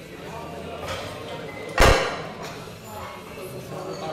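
Loaders changing the weight on a bench-press barbell: one loud clank of metal plates and collars about two seconds in, over background talk.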